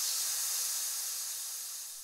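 A high, airy hiss that slowly fades away: the decaying tail of a whoosh-like transition sound effect.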